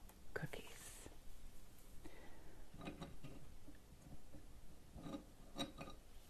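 A woman whispering softly in a few short phrases.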